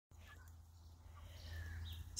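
Faint, soft chirping calls from a flock of young turkeys, a few short notes and one brief sliding call, over a low steady hum.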